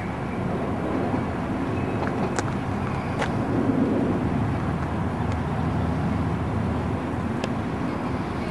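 Steady outdoor rumble of road traffic going by, rising in over the first second, with a few faint clicks.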